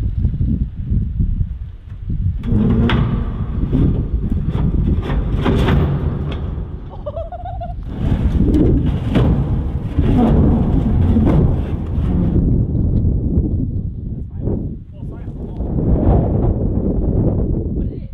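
Steel 20-foot shipping container being dragged off the back of a flatbed trailer by a truck-pulled strap: metal scraping and knocking, a short squeal, and heavy thuds as its rear end tips down onto the ground, over a loud low rumble.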